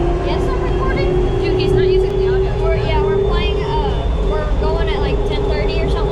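Airport tram (automated people mover) running on its guideway: a steady electric drive whine that slowly rises in pitch as it picks up speed, over a constant low rumble, with voices talking.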